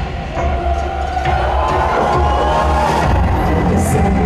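Live pop music played loud over an arena sound system, with heavy steady bass and long held tones, and a crowd cheering over it.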